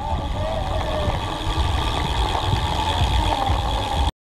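Wind buffeting the microphone of an action camera on a road bike at about 46 km/h, a heavy low rumble, with spectators' voices mixed in.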